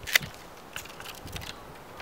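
Pruning shears snipping through an apricot branch: one sharp snip just after the start, then a few faint clicks from the blades and the cut wood being handled.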